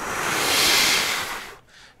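A person blowing a stream of air through the lips, with no note sounding. It swells stronger, then fades out about a second and a half in, showing a brass player's relaxed airstream being intensified as for the higher register.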